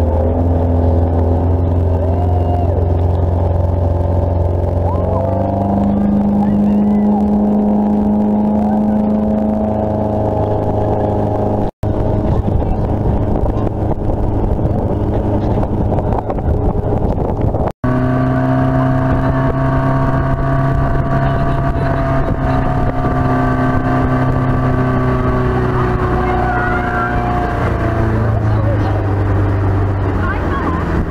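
Motorboat engine running under way at speed, a steady drone whose pitch shifts up and down a few times, with wind and water rush over it. The sound cuts out for an instant twice.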